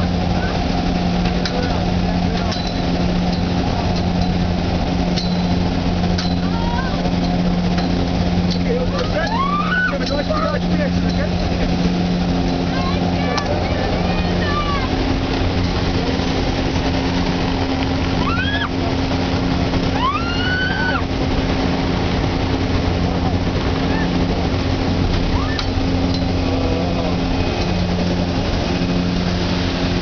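Loud, steady drone of a skydiving jump plane's propeller engines heard inside the cabin, its note shifting slightly partway through. A few short rising-and-falling shouts from the jumpers cut through it about a third of the way in and again past the middle.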